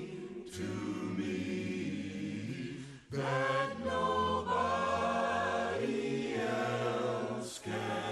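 Background choral music: a choir singing long held notes in several voices, with a short break about three seconds in and another near the end.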